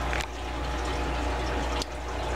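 Steady background rushing noise over a low hum, with a soft click just after the start and another near the end.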